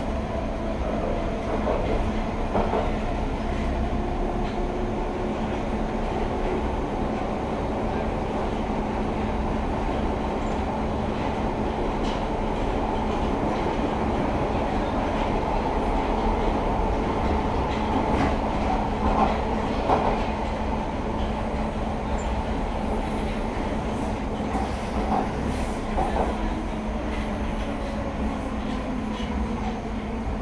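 Inside a London Underground Piccadilly line 1973 Tube Stock carriage on the move: a steady rumble of wheels on rail under a constant hum. Faint tones slide up and down, and scattered clicks come from the wheels crossing rail joints.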